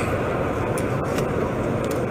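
Steady background din of a crowded exhibition hall, a wash of distant voices and hall noise, with a few faint clicks.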